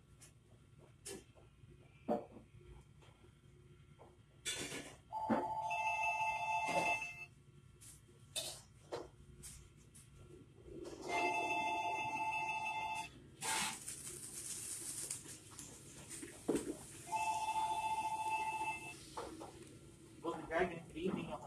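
Telephone ringing three times, each ring about two seconds long and starting about six seconds after the last, the usual ring pattern of an incoming call. A few sharp knocks and a short stretch of hissing noise come between the rings.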